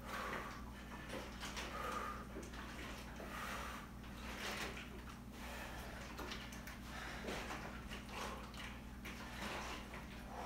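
A man breathing hard during exercise, short forceful breaths through nose and mouth about once a second, over a steady low room hum.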